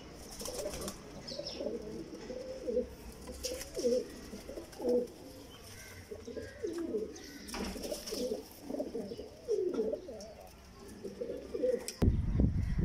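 Domestic high-flyer pigeons cooing over and over, several birds overlapping, with a few brief wing flaps.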